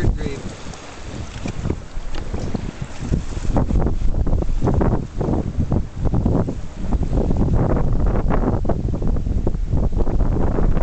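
Wind buffeting the microphone in irregular gusts, rumbling and getting stronger and more constant from about three and a half seconds in.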